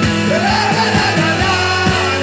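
Live band playing with a steady drum beat, about three to four hits a second, and a voice singing a wavering line that starts about a third of a second in.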